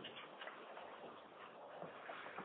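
Faint, steady hiss and background noise of an open telephone conference line, heard through the narrow band of a phone connection.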